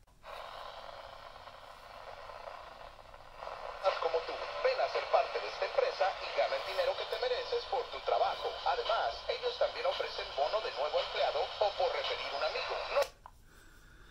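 AM broadcast from the small built-in speaker of a National Radicame C-R3 radio/camera, thin and tinny with no bass. A few seconds of static hiss give way to a voice broadcast, which cuts off suddenly about a second before the end as the radio is switched off.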